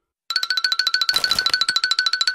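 Electronic cartoon sound effect: a fast, even trill of about a dozen pulses a second on a steady pitch. It starts a moment after a brief silence.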